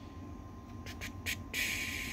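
A few light clicks from the spectrum analyzer's rotary knob being turned to move the marker, then a steady hiss that starts about one and a half seconds in.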